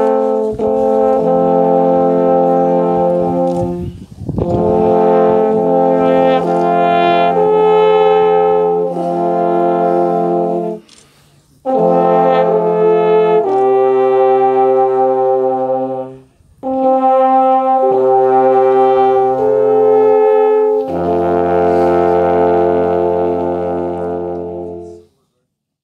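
An ensemble of eight alphorns playing slow music in long held chords, phrase by phrase with short breaths between, ending on a long low final chord that fades out.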